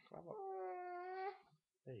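A young child's high-pitched, drawn-out vocal note, held for about a second as a silly whine.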